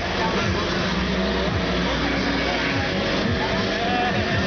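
Freestyle motocross dirt bike engine revved in repeated short blips, each rev falling away in pitch, over a constant din of crowd and background voices.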